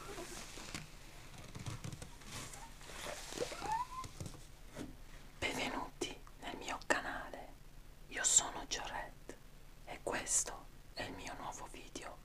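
A man whispering close to the microphone in short, breathy bursts through the second half. Before that, soft rubbing and handling sounds.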